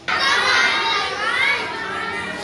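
A class of young schoolchildren reciting aloud together in chorus, many voices overlapping, starting all at once.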